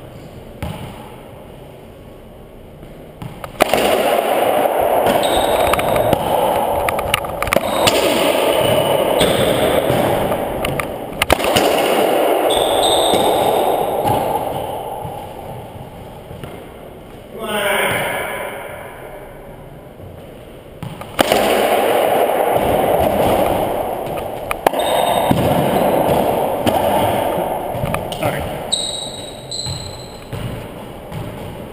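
Racquetball play: sharp cracks of the ball striking racquet, walls and floor, echoing in the enclosed court. Each rally brings a loud rushing noise lasting several seconds before it dies down, twice.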